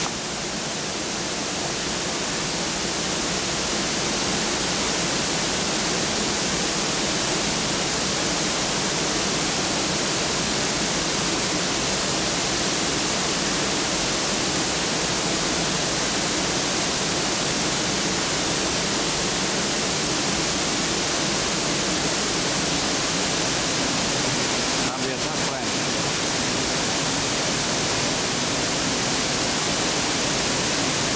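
A large waterfall swollen with floodwater, rushing steadily as a dense, even wash of water noise.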